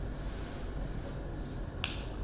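Quiet room tone with a low hum, broken by one short, sharp click near the end.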